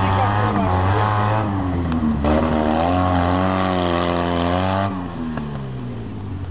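A small rally car's engine running hard on a loose dirt course. Its pitch dips briefly about two seconds in, then falls and quietens near the end as the car slows to a stop.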